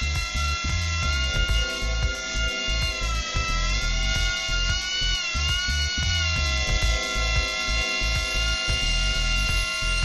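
Micro Fly miniature RC flyer's tiny electric motor and propeller whining steadily, its pitch rising and falling smoothly as the throttle is worked.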